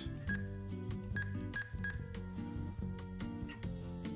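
Quiet background music playing under four short electronic key beeps from a TidRadio TD-H8 handheld's keypad as its buttons are pressed to change power level. The last three beeps come in quick succession in the first half.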